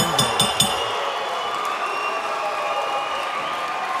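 Fight crowd cheering and applauding after a knockout knee ends the bout.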